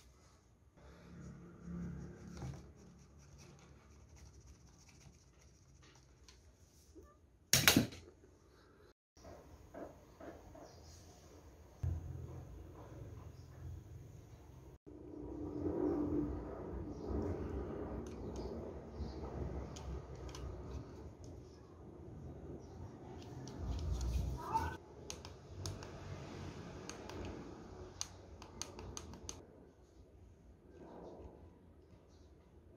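Hands handling a plastic toy transformation device, the DX Evoltruster: rubbing, shifting and small clicks of hard plastic, with one short sharp knock a little after seven seconds. The handling grows busier from about twelve seconds on, once the toy is held and turned in both hands.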